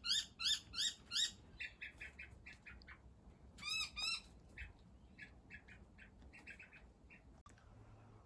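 A bird calling: a quick regular run of rising chirps, about three a second, then scattered shorter chirps with a brief burst of arched notes about four seconds in, the calls growing sparser and fainter.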